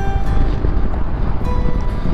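Wind rushing over the microphone of a motorcycle rider at speed, with a few faint notes of music lingering underneath.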